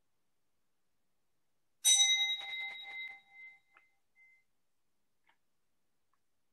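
A small bell struck about two seconds in, its bright ring with a quick flutter of strikes dying away within about a second and a half.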